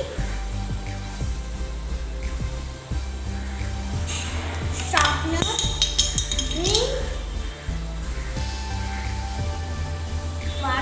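Background music with a steady low beat. Between about five and seven seconds in, a run of light clinks as small objects are handled, with a few short sounds from a child's voice.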